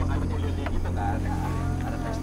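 A steady low rumbling drone, with faint broken voices over it.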